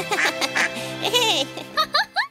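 Cartoon duckling quacking, a string of short pitched quacks that bend up and down, ending in a few quick rising calls, over background music.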